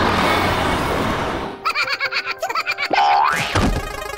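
Cartoon sound effects. A dense whooshing noise fills the first second and a half, then comes a rapid run of clicks and short pitched blips, ending in a quick rising glide like a slide whistle.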